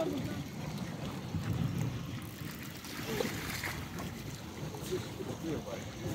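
Steady low rumble and wash of a small boat on open water, with wind on the microphone and faint voices in the background.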